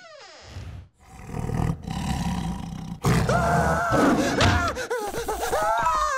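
A short falling swoosh, then a big cat's roar from the cartoon leopard cub that has suddenly grown huge. About three seconds in, a boy's long, wavering scream begins.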